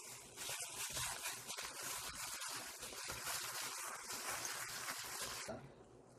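Seasoned, salted overripe cucumber being tossed by hand in a plastic glove in a stainless steel bowl: a continuous wet squishing with fine crackle from the sticky dressing and the glove, stopping about half a second before the end.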